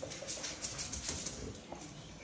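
Quick light clicking and tapping of a large dog's claws on a wooden floor as it walks, busiest in the first second and a half.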